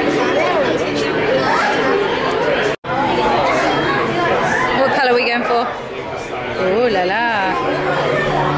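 Voices chattering in a busy indoor hall, with a brief drop-out to silence about three seconds in.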